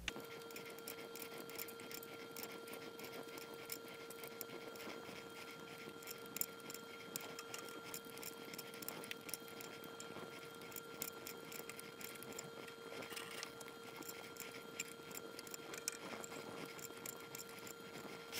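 Faint, irregular ticks and clicks of a small Allen wrench turning the screw of a 3D printer's belt tensioner as the belt is tightened. A faint steady tone runs underneath.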